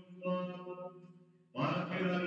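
Singing with long held notes: one phrase fades away during the first second and the next begins loudly about a second and a half in.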